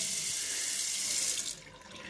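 Water running from a Pfister bathroom faucet spout into the sink as the lever handle is opened, then shut off about a second and a half in.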